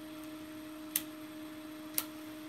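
Two sharp clicks about a second apart as keys are pressed on a Canon desk calculator, over a steady low hum.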